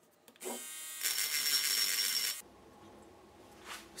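Handheld rotary mini-drill spinning up to a high whine and grinding burrs off a steel axe head, then cutting off suddenly about two and a half seconds in.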